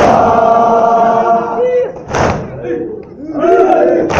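A group of men chanting a noha in unison, holding a long line, then breaking off for one loud collective slap of hands on chests (matam) about two seconds in; the chanting picks up again near the end.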